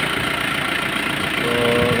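Isuzu 4JG2 four-cylinder turbodiesel idling steadily.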